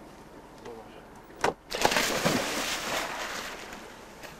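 A person jumping into the sea: a sudden loud splash about a second and a half in, followed by churning, fizzing water that fades away over about two seconds.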